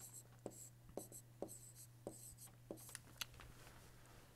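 Faint stylus strokes on a digital screen while words are handwritten: about a dozen short, irregular taps and scratches over a faint steady hum.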